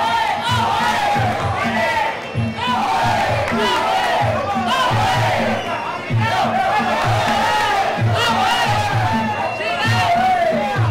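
Traditional Muay Thai fight music: a wavering, ornamented Thai oboe (pi java) melody over a steady, repeating drum beat, with a crowd shouting over it.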